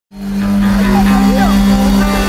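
Live salegy band music fading in quickly: a steady held low note over a pulsing bass, with voices rising and falling above it.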